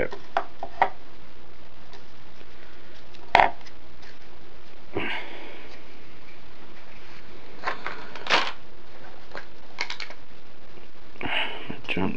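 Handling and movement noises: scattered clicks and a sharper knock about three and a half seconds in, with a couple of brief breathy rustles, over a steady background hiss.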